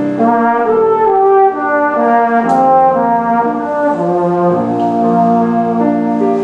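Tenor horn playing a melody of held notes that change every half second or so, accompanied by a grand piano.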